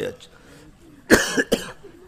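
A man coughs, a loud double cough about a second in, close to the microphone.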